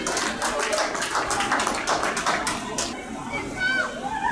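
Scattered hand clapping from a few spectators for about three seconds, with shouted voices around it and a high call near the end.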